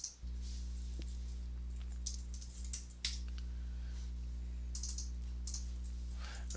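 A few computer keyboard keystrokes and mouse clicks while a program is launched, over a steady low electrical hum.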